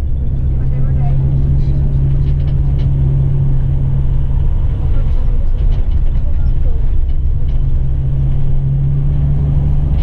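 A coach's engine and road noise heard from inside the passenger cabin while driving: a steady low rumble with an engine hum that fades about four and a half seconds in and returns about seven seconds in.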